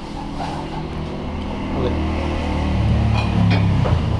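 A motor vehicle's engine running nearby, growing louder about three seconds in and then dropping away abruptly just before the end.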